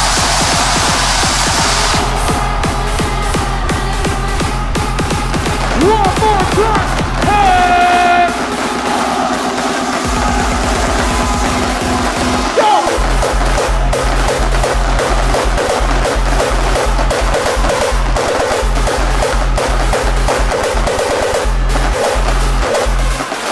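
Hardstyle remix of a pop song playing at full volume with a steady kick drum. The kick drops out about eight seconds in, a fast drum roll builds, and the full beat comes back in just before halfway.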